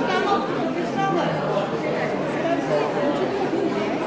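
Indistinct chatter of several people's voices in a large hall, with no words standing out.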